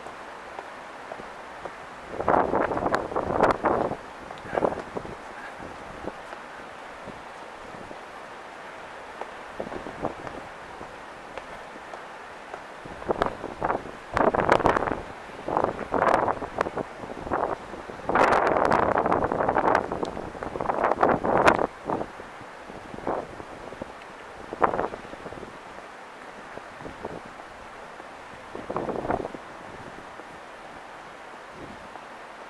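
Irregular bursts of rustling, buffeting noise on the camera's microphone over a steady background hiss. The loudest stretch comes in the middle, and there is a short burst near the end.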